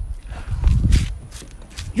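Footsteps in rubber slippers slapping on hard dirt ground, a few scattered slaps, with a low rumble about half a second in.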